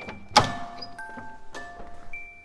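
Carousel music box playing a slow tinkling melody of single chime notes, about two a second. A sudden loud thud about a third of a second in is the loudest sound.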